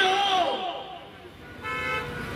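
A man shouting a slogan into a microphone, his drawn-out call falling in pitch and dying away about half a second in. After a lull, a short steady high tone sounds near the end.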